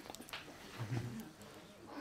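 Quiet dining-room room tone with a few faint small clicks near the start and a brief, faint low murmur of a voice about a second in.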